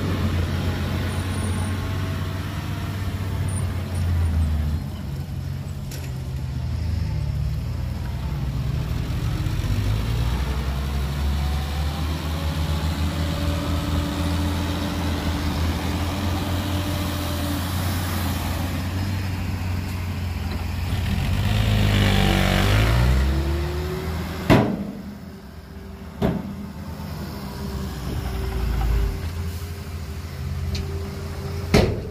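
Diesel dump truck engines running and revving, their pitch rising and falling as the trucks move and tip their beds. About two-thirds of the way through a louder rushing swell with gliding pitch builds and fades, followed by two sharp knocks.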